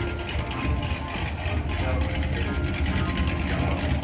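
Lamborghini Gallardo V10 engine running at idle: a steady low rumble close by.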